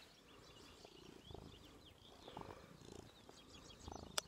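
Near silence with a domestic cat's faint purring close to the microphone.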